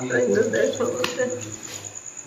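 A cricket trilling steadily at a high pitch under a person's low, indistinct voice that fades out over the first second and a half.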